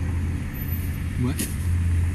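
Steady low rumble of a car heard from inside the cabin: engine and road noise, with a brief spoken word partway through.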